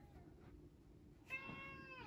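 Near silence, then about 1.3 s in a single faint, high-pitched animal call that holds one pitch for most of a second before tailing off.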